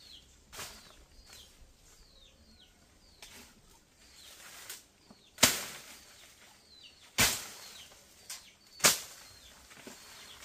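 Machete chopping into brush and stems: four sharp chops, the first light and the other three hard, spaced a second or two apart in the second half. Behind them a bird repeats a short, high, downward-sliding chirp under a second apart.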